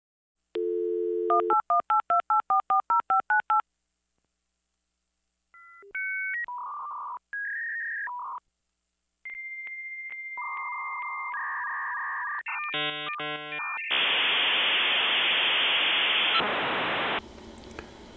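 Dial-up modem connecting over a telephone line. A dial tone is followed by a quick string of touch-tone digits, then the answering and handshake tones between the two modems, and finally about three seconds of loud hiss as they train up before going quiet.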